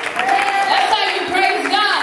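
A woman's voice amplified through a microphone and PA in a large hall, with audience noise beneath it.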